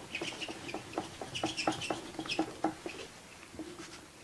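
Oil pastel scribbling on paper in quick short strokes, about three or four a second, with a squeaky scratch to them. The strokes thin out and stop about three seconds in.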